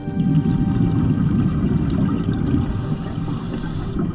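Scuba diver's exhaled bubbles rumbling and gurgling out of the regulator for about two and a half seconds, then a hiss of breath drawn in through the regulator near the end. Background music continues underneath.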